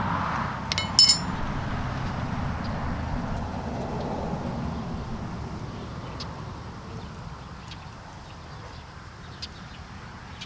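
Two quick, sharp clinks, a utensil against glass or a hard dish, about a second in, over steady background noise that slowly fades away.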